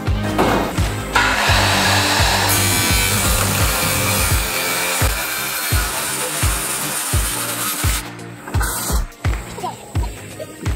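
Kobalt handheld circular saw cutting through a corrugated galvanized metal roofing sheet, a harsh continuous cutting noise from about a second in until about eight seconds. Background music with a steady beat plays throughout.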